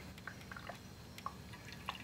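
Faint, scattered drips and trickles of used engine oil being drawn up a Pela vacuum oil extractor's tube from the engine's dipstick tube, as the oil level runs low.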